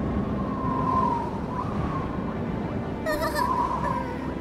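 Snowstorm wind sound effect: a howling whistle wavering up and down over a steady low rumble, with a brighter, shriller gust about three seconds in.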